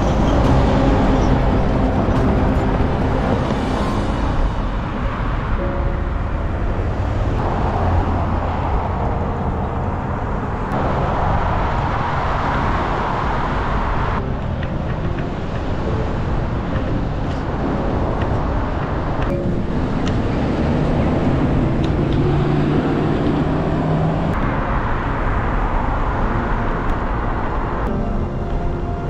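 Road traffic noise and wind rush on a bike-mounted camera as cars pass on a multi-lane road. The sound changes abruptly several times, a few seconds apart, as the footage jumps between clips.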